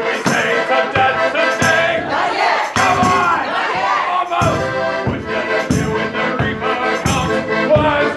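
A live song: a singer and the audience shouting and singing along, over a steady beat.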